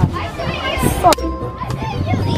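Children's voices and play sounds on a playground, with one sharp knock about a second in.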